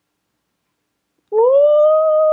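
A woman humming one long note with closed lips, coming in about a second in with a short upward slide and then holding steady.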